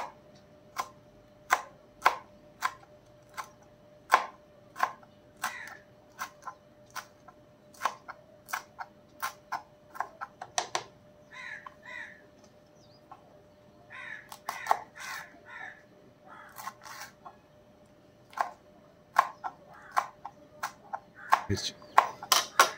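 Kitchen knife chopping green chillies finely on a plastic cutting board: sharp taps a little over one a second, coming in quicker runs in places.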